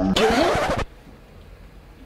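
A short, loud burst of harsh noise, under a second long, that cuts off suddenly, then quiet room tone. It is an edited comic sound effect.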